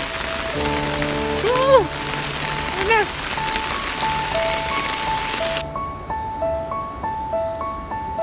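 Heavy rain pouring down, under background music of a simple stepping melody. About five and a half seconds in the rain cuts off suddenly, leaving only the music.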